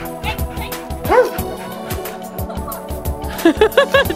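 Background music with a steady beat, over which a dog barks: one bark about a second in, then a quick run of barks near the end.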